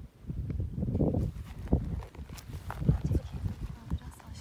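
Footsteps and shuffling on dry dirt ground: irregular low thuds with a few sharp clicks.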